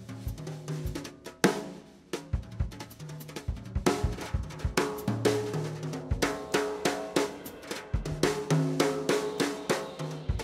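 Jazz drumming on a Gretsch drum kit played with sticks: quick snare and bass drum strokes with cymbals, and one sharp accent about one and a half seconds in.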